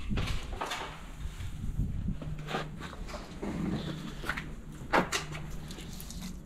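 Scattered knocks and scrapes of a sheet of OSB board being handled and shifted aside from a broken glass doorway, with the sharpest knock about five seconds in.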